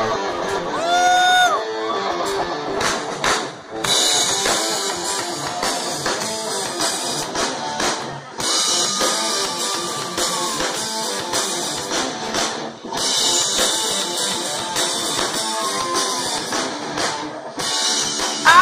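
Live rock band playing an instrumental intro on electric guitar, bass guitar and drum kit, the guitar bending notes near the start. The cymbals come in about four seconds in, with brief breaks in the playing a few seconds apart.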